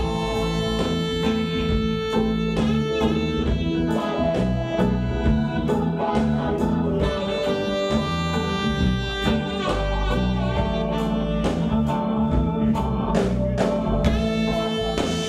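A live rock-blues band plays an instrumental passage: an electric guitar lead with long held notes, bends and vibrato over bass, drum kit and keyboard.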